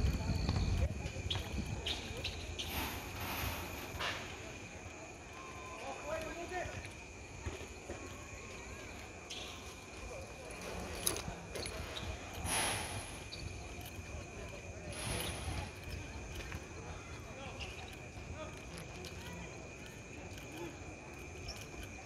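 Quiet open-air ambience: faint, distant voices over a low steady rumble, with a thin high-pitched tone running steadily underneath and a few soft ticks and brief swells of noise.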